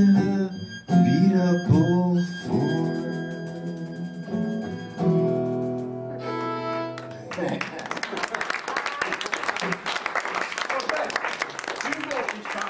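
A folk song ending on acoustic guitar and fiddle: the last sung notes slide through about the first two seconds, then the final chord is held with the fiddle sustaining. The music cuts off about seven seconds in and audience applause follows.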